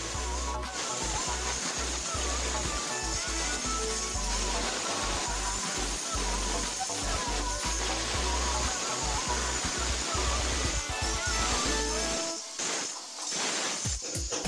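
Background music: a sung or played melody over a steady bass beat, which drops out briefly near the end.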